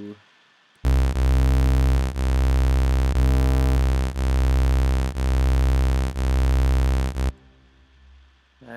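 Low, buzzy synth bass note from an Oscillot modular software synth patch, held for about six seconds and then cut off. Its level dips in a pulse about once a second, a weird pulsing caused by a ring modulator left at about one hertz.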